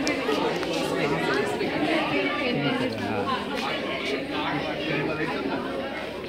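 Many people talking at once in a busy indoor hall: overlapping, indistinct conversation.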